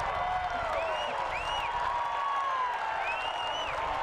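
Baseball crowd noise: a steady murmur with voices calling out now and then.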